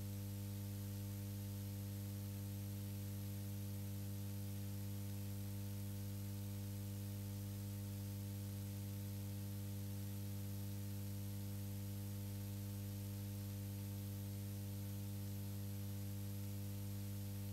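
Steady electrical hum with a faint hiss, unchanging throughout; no race sound is heard.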